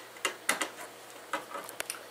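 Scattered light clicks and taps of hands handling plastic and metal parts inside an open desktop PC case: a few about half a second in and another cluster near the end.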